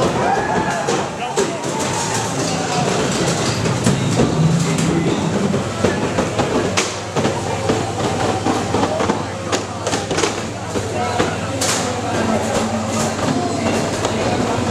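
Mantisweight combat robots fighting inside a plexiglass arena: a steady mechanical drone of motors with many sharp knocks and clatters as the robots strike each other and the arena.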